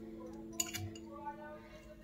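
Metal fork clinking lightly against a ceramic plate while mashing soft jelly sweets, a sharp clink about half a second in and a fainter one later.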